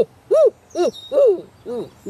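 A man imitating a barred owl's caterwauling with his voice: a run of short 'Ah!' calls, about two and a half a second, each rising and then falling in pitch, getting weaker near the end.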